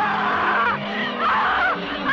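Horror-film soundtrack: shrill screaming voices rising and falling in pitch over a steady low droning note of the score.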